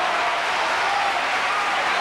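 Opera audience applauding, a dense, steady clapping that neither builds nor fades.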